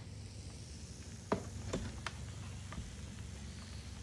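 A metal baking sheet of pizza being taken from the oven and handled: four light clicks and knocks, the loudest about a second in, over a steady low hum.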